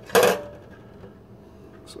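A metal teaspoon set down on a stainless steel sink: one short clink just after the start, then quiet.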